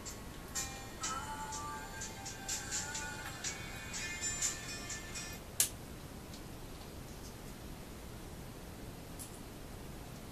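Thin music with a ticking beat and little bass, played by a small MP3 player. It stops about five and a half seconds in with a sharp click, leaving only faint hiss.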